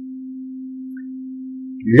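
A steady low hum: one unchanging tone, with no other sound over it.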